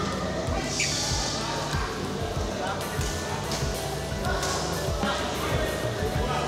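Badminton rally on an indoor court: repeated dull thuds of players' feet on the court and a few sharp racket strikes on the shuttlecock, over music and voices in the hall.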